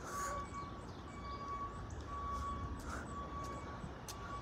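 Outdoor street rumble with a thin electronic beep repeating about once a second, each beep lasting nearly a second.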